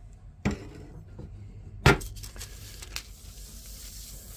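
Small items being moved and set down on a workbench: a light knock about half a second in and a sharper, louder knock just before two seconds, then a soft rustle of paper sliding as the glued wall frame is pushed back across the waxed paper.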